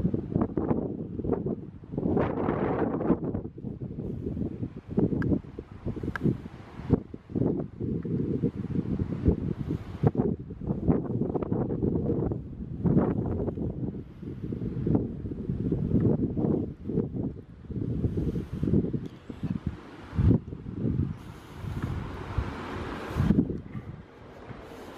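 Wind buffeting the camera's microphone in uneven gusts, a low rumble that surges and drops throughout.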